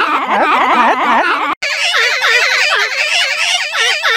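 Mickey Mouse's cartoon voice, digitally processed with a fast, wavering pitch-wobble effect so it warbles continuously. It cuts out briefly about one and a half seconds in and starts again at a higher pitch.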